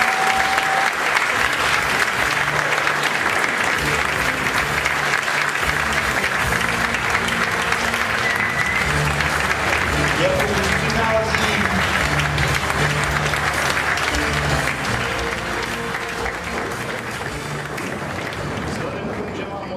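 Sustained audience applause with music underneath, its low bass notes coming and going; the applause eases off over the last few seconds.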